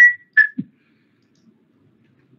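The last two notes of a short, high-pitched tune, ending with a low thump about half a second in.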